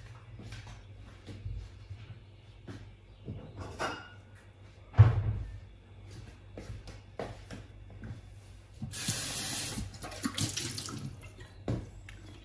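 Water running briefly, about a second and a half long near the end, amid light knocks of kitchen handling, with a single thump about five seconds in.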